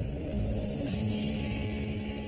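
Television title-sequence audio: a low rumbling swell with high hiss, joined about half a second in by a steady low held tone, leading into the show's theme music.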